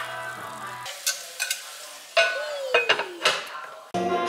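Shrimp frying in oil in a ceramic-coated frying pan, sizzling as a wooden spoon stirs them, with a few sharp knocks of the spoon against the pan and one short falling squeak. Background music plays for about the first second, then drops out.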